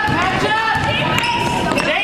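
A basketball being dribbled on a gym floor, with overlapping voices of spectators and players echoing in the hall.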